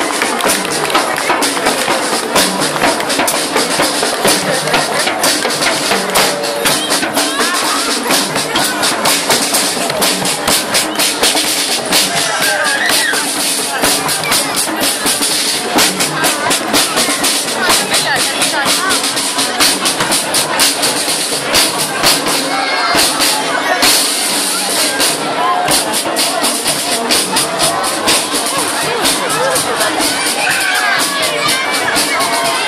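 Military marching band playing as it marches past, with brass (sousaphone, trumpets, saxophones) over a busy beat of drums, and crowd voices alongside.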